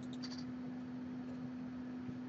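A computer mouse clicked a couple of times, faint, about a quarter second in, over a steady low hum.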